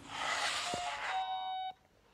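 A burst of hiss, then a steady electronic beep tone about a second long that cuts off suddenly.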